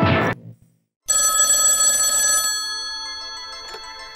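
Bumper music cuts off, then after a moment of silence a telephone bell rings once, about a second in, for roughly a second and a half, and then slowly rings out.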